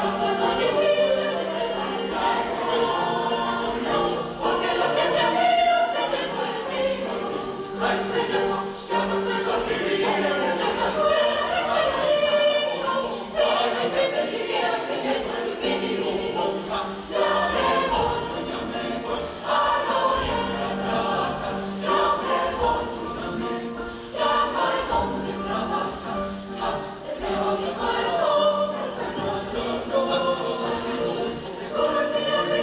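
Mixed youth choir singing a traditional Ecuadorian folk song, with a held low note under the voices for long stretches and a few sharp percussive hits scattered through.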